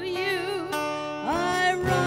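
A woman singing a slow song with vibrato over live band accompaniment. She holds a wavering note, eases off, then slides up into a new held note a little past halfway.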